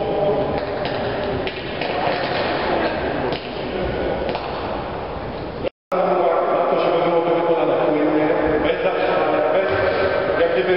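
Indistinct voices echoing in a large sports hall. The sound cuts out completely for a moment about six seconds in.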